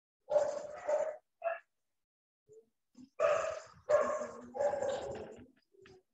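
A dog barking through a video-call microphone: a few barks near the start, then a longer run of barks from about three seconds in.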